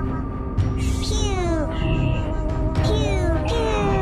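Sci-fi style electronic music with a held synth tone. About one second in and again about three seconds in come falling electronic sweeps, each trailed by a short hiss, like a flying-saucer sound effect.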